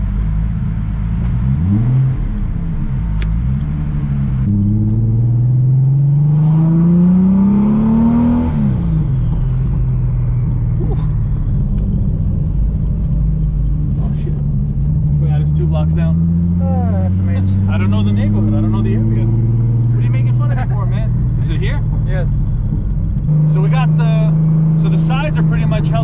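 Turbocharged 24-valve VR6 in a swapped Audi S4, heard inside the cabin, accelerating hard. It revs up through one gear, then its pitch drops sharply at a shift, with a high whistle falling away just after. It pulls more slowly up through the next gear, then settles to a steady cruise near the end.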